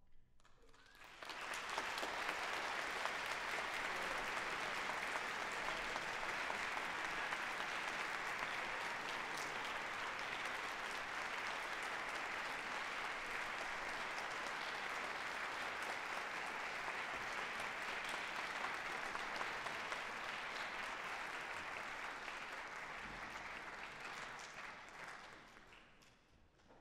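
Audience applauding, starting about a second in as the orchestra's last note dies away. The applause holds steady, then thins out and stops near the end.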